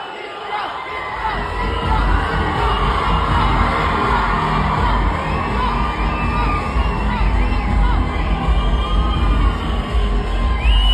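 A large crowd cheering and shouting, many voices at once, growing louder about a second in and staying loud, with music underneath.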